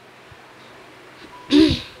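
Quiet room tone, then one short voiced cough close to the microphone about one and a half seconds in.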